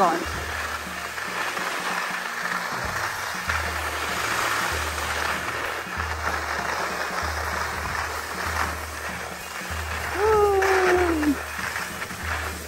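Skis sliding over soft snow in a steady hiss during a slow downhill run, under background music with a low pulsing bass. About ten seconds in, a short falling hum of a voice.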